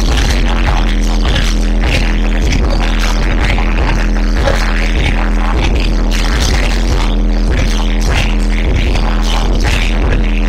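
Live hip-hop played loud through a club PA: a bass-heavy beat with a steady pulse, and rappers performing into microphones over it.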